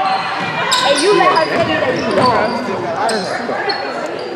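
Basketball being dribbled and sneakers squeaking on a hardwood gym floor, with the sound echoing in the hall. Nearby spectators' voices talking run over it.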